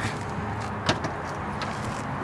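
A single sharp click about halfway through, from the 2013 Mazda 6's trunk being unlatched, with a few faint ticks around it over a steady background hiss.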